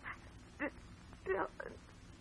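Four short, high whimpering cries, each a brief falling wail, over a faint steady hum.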